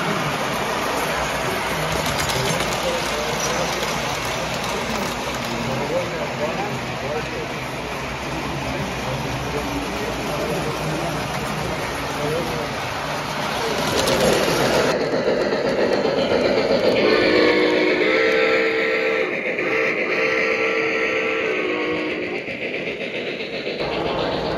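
A tinplate three-rail model train running, with the rumble of wheels and crowd chatter around it. About fifteen seconds in the sound changes to a model steam locomotive's chime whistle, blown in a few held blasts.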